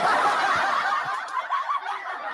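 Laughter from many voices at once, starting suddenly and slowly fading.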